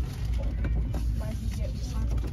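Store background noise: a steady low rumble with faint voices in the background.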